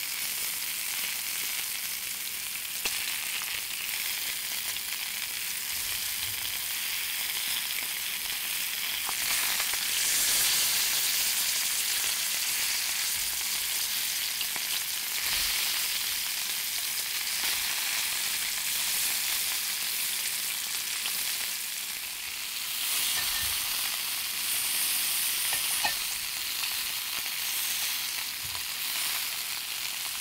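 Sausages sizzling in a ridged cast-iron grill pan: a steady, high frying hiss with a few faint pops.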